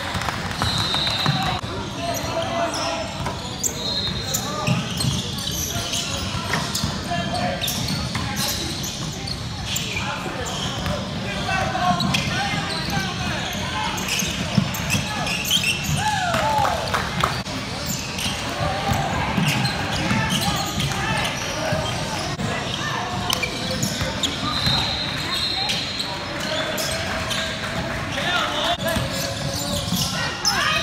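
Indoor basketball game sounds: a ball bouncing on the hardwood court, short high shoe squeaks and scattered voices, echoing in a large gym.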